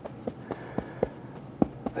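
A wide paintbrush working oil paint on a palette, mixing the colour: soft scrubbing with about half a dozen short, sharp taps of the brush against the palette.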